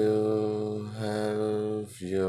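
Music: acoustic guitar chords strummed and left ringing, re-struck about halfway through and fading just before the next chord.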